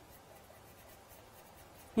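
Faint scratchy swishing of a bristle paintbrush spreading a thin coat of white gesso across an MDF panel.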